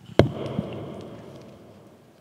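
A single sharp thump on a handheld microphone being handled, just after the start, followed by a soft rustle that fades away over about a second.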